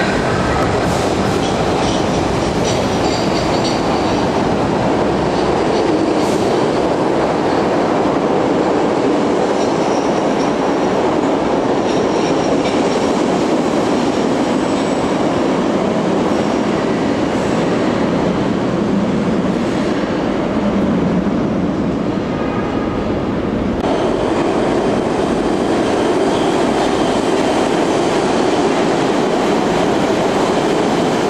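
SEPTA subway trains running through an underground station: a steady loud rumble of cars and wheels on the rails, with faint high squealing tones in the first half.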